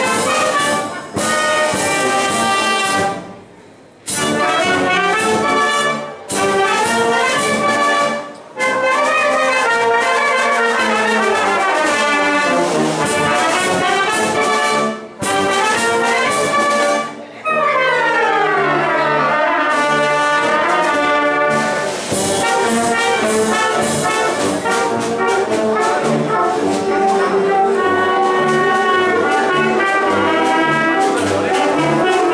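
Oaxacan village wind band (clarinets, saxophones, trumpets, trombones, tubas and cymbals) playing a tune together. The band stops briefly several times between phrases, the longest break about three seconds in, and plays fast falling runs a little past halfway.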